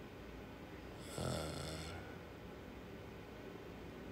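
A single deep breath from a man lying in trance, rasping like a snore, about a second in and lasting under a second, picked up close on a clip-on microphone.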